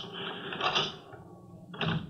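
A key scraping and rattling in a door lock as it is worked, ending in a sharp click near the end as the lock gives and the door unlocks.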